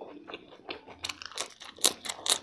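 Close-up crunching and chewing of crisp lettuce leaf: a run of sharp crunches about every half second, the loudest just before the end.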